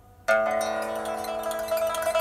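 Plucked-string music with chiming notes played back over a pair of large hi-fi loudspeakers driven by a valve amplifier. After a faint, fading note, a loud new passage enters suddenly about a quarter second in and rings on.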